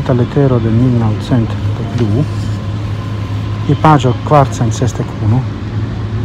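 A man talking, with a steady low hum from the vehicle he is riding in underneath.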